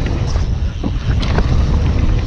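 Wind buffeting the camera's microphone as a mountain bike rides fast down a dirt jump trail, a heavy rumble with the tyres on the dirt. Sharp clicks and rattles from the bike over the bumps come through it, several of them about a second in.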